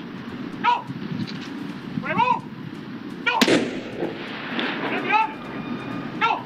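A single loud ceremonial gun salute shot about three and a half seconds in, ringing out with a long echoing tail, between short shouted military commands.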